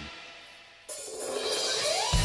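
Opening of a live heavy-metal song: the intro sound dies away, then a little under a second in, cymbals come in suddenly and swell, building toward the band's entry.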